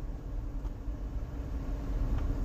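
Low steady rumble of an idling car heard from inside its cabin, with a faint steady hum over it.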